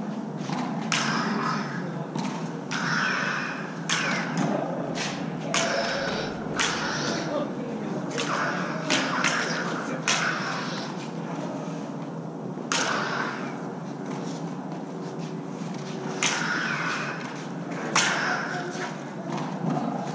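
Combat lightsaber duel: a steady electric hum with whooshing swings and frequent sharp clashes as the two blades strike each other, echoing off bare concrete walls.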